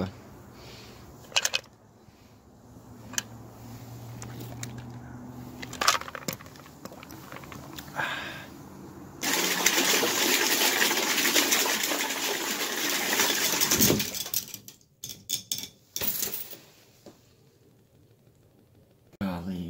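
Water rushing in a bathtub for about five seconds, starting and cutting off suddenly, with a few handling clicks and knocks before and after.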